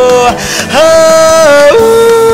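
Song with a wordless sung vocal holding long, steady notes. The first note breaks off about a third of a second in, a higher note is held for about a second, then the voice slides down to a lower held note near the end.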